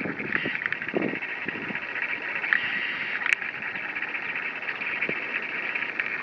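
Steady high chirring of insects, with a single sharp click about halfway through.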